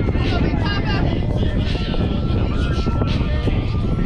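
Voices of players and spectators calling out across a ballfield, over a steady low rumble of wind on the microphone.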